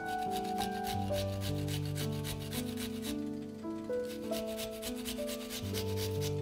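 A garlic clove rubbed back and forth against the holes of a small stainless-steel box grater, giving quick, even, repeated rasping strokes.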